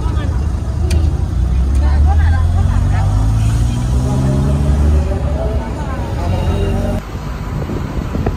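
Car engine and road noise heard from inside the cabin while driving. The engine's pitch climbs steadily for a few seconds as the car accelerates, then eases off near the end.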